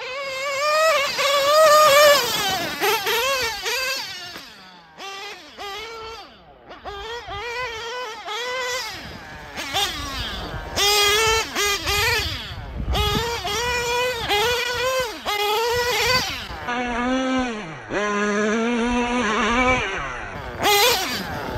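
TLR 8ight-XT nitro truggy's small glow-fuel engine revving up and down as it is driven, its high whine rising and falling with the throttle. It drops to a lower, steadier note near the end.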